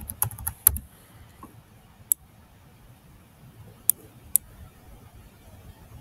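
Computer keyboard typing: a quick run of key presses in the first second, then three single clicks a second or two apart.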